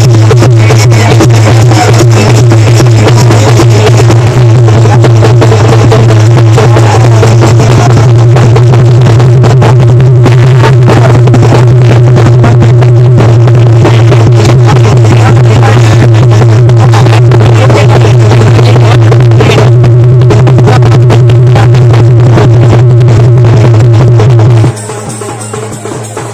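Festival drumming and music at a crowded village fair, so loud that it overloads the recording into a continuous distorted din with a dense, rapid beat.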